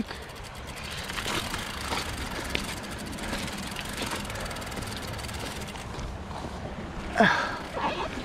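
Mountain bike rolling over a loose gravel and rock trail: a steady crunch of tyres with small clicks and rattles from the bike. About seven seconds in, a short falling vocal sound, likely a grunt or exclamation from the rider.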